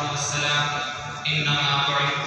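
A voice chanting an Islamic devotional naat in long, held melodic lines over a steady low hum.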